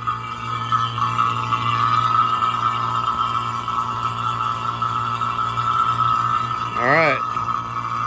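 Fieldpiece refrigerant vacuum pump running steadily, a low hum under a steady high whine, as it begins evacuating a heat pump line set. A short rising voice-like call comes about seven seconds in.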